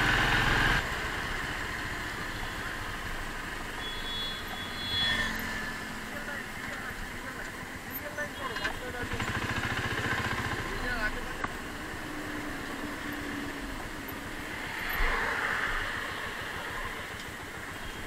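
Motorcycle engine running, louder for the first second while the bike is still moving, then quieter as it slows and idles at a stop, with faint voices around it.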